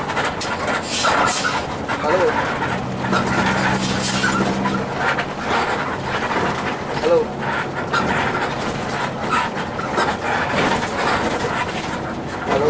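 Inside the cabin of a moving Mercedes-Benz 1521 intercity bus: the engine runs steadily under road noise, with frequent short rattles and knocks from the cabin.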